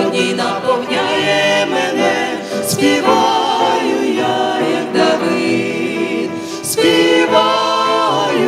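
A church congregation and worship team, men and women together, singing a Ukrainian-language worship song, with several voices led through microphones.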